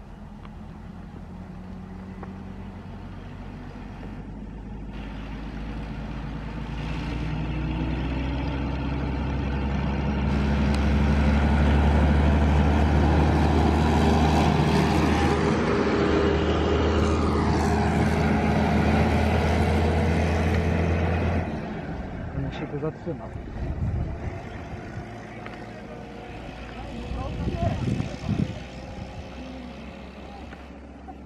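Diesel engine of an Ikarus 280 articulated bus running as the bus approaches and drives past close by. It grows steadily louder, holds at its loudest for several seconds, then falls away abruptly as it goes by.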